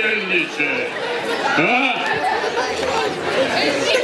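Indistinct chatter of several people talking at once, children's voices among them, with brief higher-pitched voices near the start and about halfway through.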